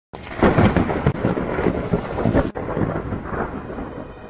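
Thunder: loud crackling peals over the first two and a half seconds, then a softer rumble that fades away, with a hiss like rain.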